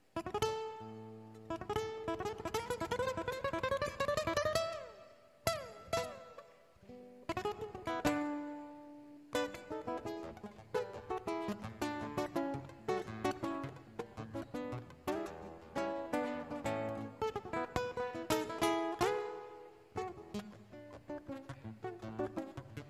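Solo nylon-string classical guitar played fingerstyle: a rising run of plucked notes near the start, then chords and quick runs of notes, with short breaks between phrases.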